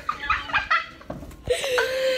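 Young people's voices with short vocal sounds, then a loud, high-pitched squeal starting about one and a half seconds in.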